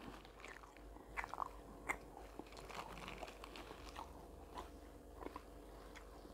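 Faint, scattered crunching and small crackles of someone chewing a piece of kunafa pastry with a brittle, nut-candy topping like halawet el-mouled.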